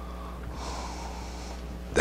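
A man's breath drawn in, lasting about a second, over a steady low electrical hum.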